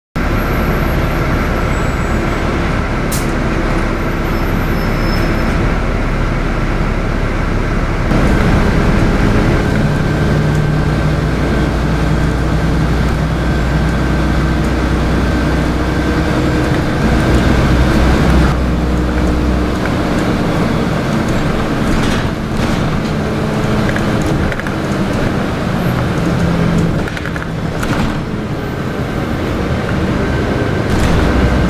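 Steady engine and road noise from inside a moving city bus cabin, with the engine note shifting a few times as the bus changes speed.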